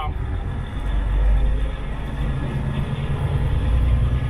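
Steady low rumble inside a semi-truck cab at highway speed: the diesel engine running with road noise.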